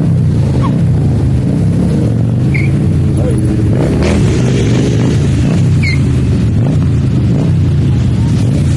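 A column of motorcycles riding past together, their engines running in a loud, steady drone.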